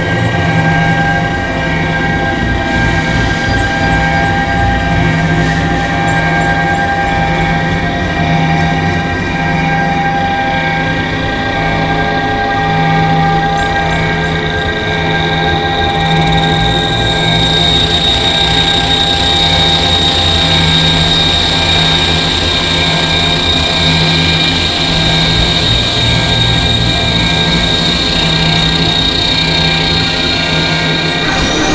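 Experimental electronic drone played on synthesizers: many steady, held tones over a low tone that pulses on and off, with a high, thin tone entering a little past halfway.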